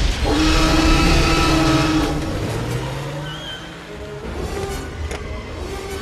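A Jeep Wrangler's engine revving hard as its rear wheels spin and throw mud, loudest for the first two seconds and then easing, under orchestral film score.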